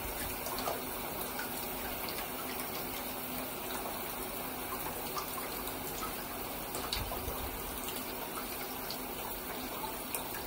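Water running steadily from the tap into a shallow bath, a continuous even gush, with a few light knocks here and there.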